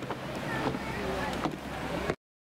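Footsteps on wooden stairs and a plank deck, a few soft knocks over a steady windy hiss.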